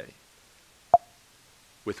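A single short, sharp pop about a second in, against quiet room tone.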